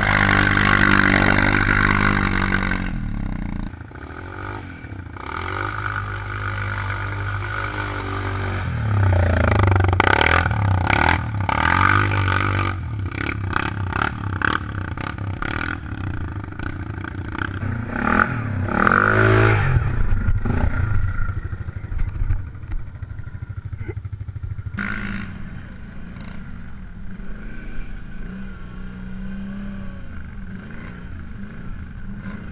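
ATV engines revving up and easing off as quads churn through mud and water, with splashing and clatter. The revs are highest at the start, again about ten seconds in and around nineteen seconds in.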